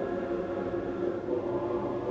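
Opera orchestra playing held, sustained chords, with no solo voice.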